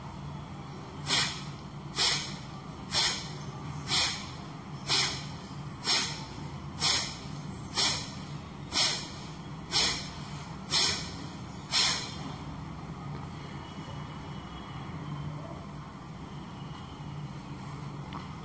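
Kapalbhati breathing: twelve short, forceful exhalations through the nose, about one a second, even in speed and force, ending about twelve seconds in.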